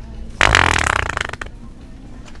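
Fake wet fart from "The Sharter" fart-noise toy: one sudden, sputtering blast of about a second that fades out.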